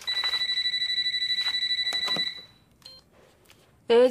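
Phone ringing: a high, rapidly trilling electronic ring that lasts about two seconds and then cuts off, followed by a faint click.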